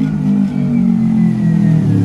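Motorbike engine running close by, its pitch sinking slowly as it passes.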